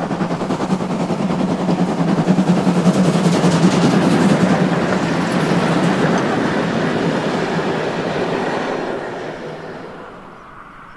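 Steam-hauled train passing close by, loudest about three to four seconds in and fading away near the end.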